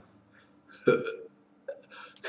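A man's short throaty vocal sound, starting suddenly about a second in, followed by a few faint mouth noises.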